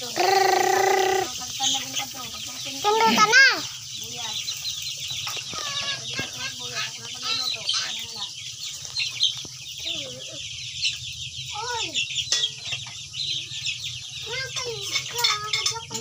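A flock of young white chickens peeping and clucking continuously, with many short high chirps. Two louder held calls stand out, one in the first second and one about three seconds in.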